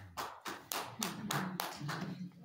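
Hand clapping, about three to four claps a second, at the close of a spoken talk.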